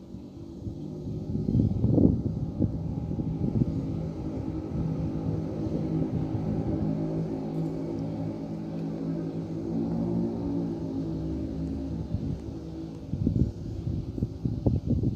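An engine running close by, with a steady low hum that grows louder about a second in, holds, and fades away near the end.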